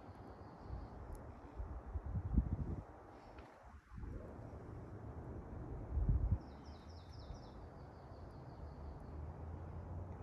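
Quiet outdoor ambience with a short series of high bird chirps a little past the middle, trailing off into a faint trill. Low rumbling bumps on the microphone come about two and a half and six seconds in.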